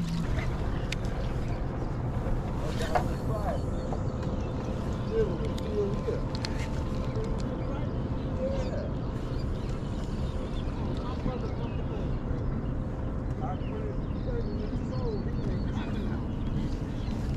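Steady wind rumble on the microphone over open water, with faint distant voices and a faint steady hum underneath.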